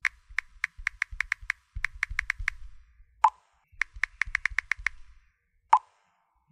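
End-card animation sound effects: two runs of quick, sharp clicks, about five a second, each run followed by a louder, lower pop, one about three seconds in and one near the end.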